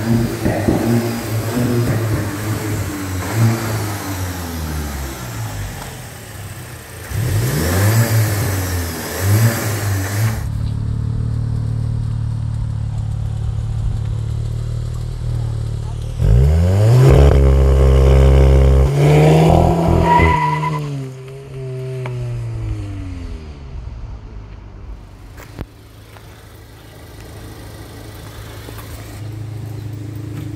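2021 VW Golf GTI Mk8's turbocharged 2.0-litre four-cylinder through its stock exhaust. It is first blipped repeatedly from idle in quick revs, then held at steady raised revs on launch control. About sixteen seconds in it launches with a loud climb in pitch, then falls away and fades as the car pulls off, and is idling again near the end.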